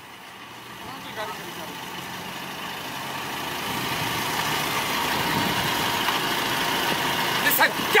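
A car engine running at idle, growing steadily louder as it comes closer.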